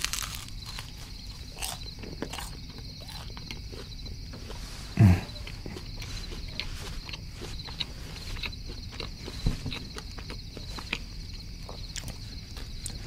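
Close-miked chewing of a crispy baked parmesan bread bite: a dense run of small crunches and mouth clicks, with a brief louder low sound about five seconds in and another near the ninth second.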